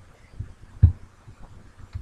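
Two soft low thumps about half a second apart, the second louder.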